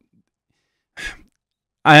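A man's single short breath about a second in, amid otherwise dead silence; his speech starts again near the end.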